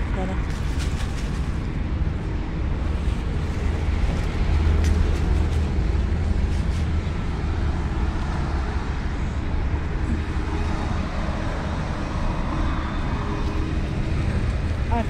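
Steady low outdoor rumble with an even background hiss, broken by a few light clicks and rustles.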